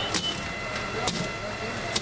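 A hand tool striking at a window or door of a burning building, three sharp knocks about a second apart, over voices and a faint steady high tone.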